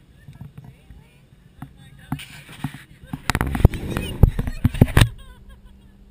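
A quick run of loud knocks and rustling, heaviest from about three to five seconds in, that stops abruptly.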